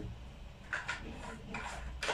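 Plastic IBC valve-cover parts being handled and pushed together by hand: a small click, then two faint scraping rustles, one about a second in and one near the end.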